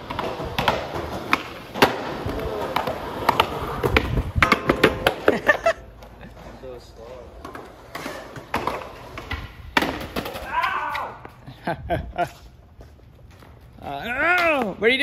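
Skateboard wheels rolling over concrete, with repeated sharp clacks and knocks of the board hitting the ground. Busiest in the first half, quieter after about six seconds.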